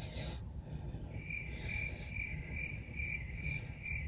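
Cricket chirping, short regular chirps at about two to three a second, starting about a second in.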